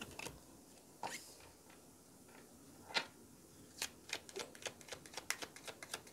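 Faint sound of a deck of cards being shuffled by hand: a couple of isolated card snaps, the sharpest about three seconds in, then from about four seconds in a quick irregular run of soft card flicks, several a second.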